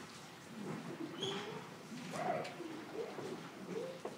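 Faint, soft voices murmuring, short sounds whose pitch glides up and down.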